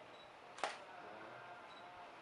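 A single camera shutter click about half a second in, with a faint short high beep shortly before it and another near the end.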